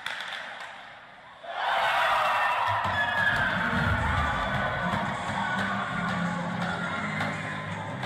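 Goal music over an ice arena's public-address speakers, starting suddenly about a second and a half in, marking a goal just scored.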